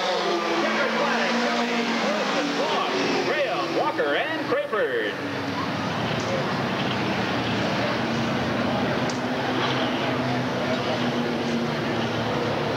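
Super stock race car engines running on the track, their pitch rising and falling in the first few seconds, then settling into a steady drone.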